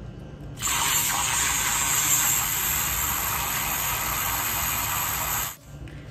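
Handheld electric milk frother whirring in a mug of cold almond milk, with a steady high whine and the whisk splashing the milk. It switches on about half a second in and cuts off after about five seconds.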